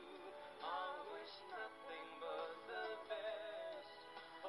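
Live music: a singer's voice with strong vibrato, in short sung phrases over held instrumental chords.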